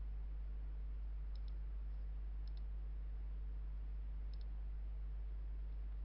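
Three computer mouse clicks, each a quick double tick of button press and release, spread over a few seconds, over a steady low hum.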